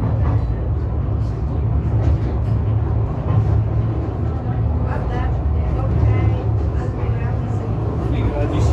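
Rasciesa funicular car running downhill, a steady low rumble heard from inside the cabin.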